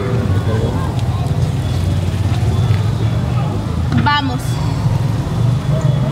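Steady low rumble of road traffic, with a brief high call of a fraction of a second about four seconds in.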